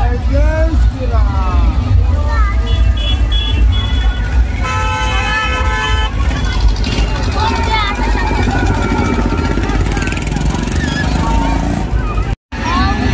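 Street procession crowd noise: many voices over a heavy, steady low rumble. In the middle a horn sounds one steady tone for about a second and a half, after a few shorter high toots.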